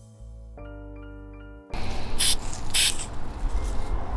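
Background music with held tones that stops suddenly about a second and a half in. Then two short hisses from a Krylon Black Lava webbing spray aerosol can, with a low rumble underneath.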